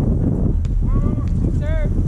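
Wind rumbling on the microphone, with two short, high calls that rise and fall in pitch, about a second in and again near the end.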